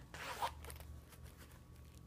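Metal zipper on a zip-around travel wallet being run, a short zip of about half a second at the start, then faint handling noise of the wallet.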